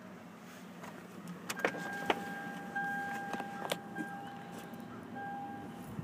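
A few sharp clicks of switches or buttons inside a car's cabin, then a thin steady electric motor whine with a faint fan-like hiss. The whine drops out briefly a couple of times and stops just before the end.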